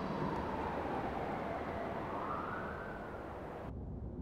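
Siren wailing over a steady rumble of traffic, one slow falling-then-rising sweep in pitch. Near the end the high hiss drops away suddenly, leaving the low traffic rumble.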